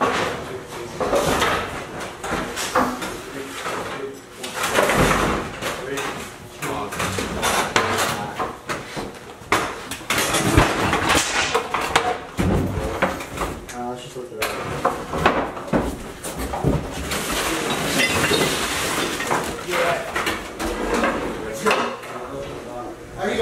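Indistinct voices mixed with repeated knocks, bangs and clatter as household junk and furniture are handled and moved.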